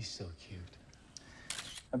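Hushed voices, with a few faint clicks and a brief hiss about a second and a half in, just before a man starts to speak softly.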